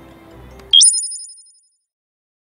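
A short, bright electronic chime sound effect: a quick upward jump in pitch that rings for under a second and dies away, then dead silence.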